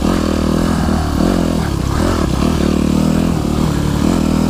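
Yamaha YZ250F's four-stroke single-cylinder engine pulling the dirt bike along a trail, the revs dipping and rising again several times as the throttle is worked.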